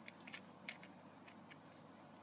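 Faint clicks of a luggage strap combination lock's number wheels being turned, a few of them in the first second or so.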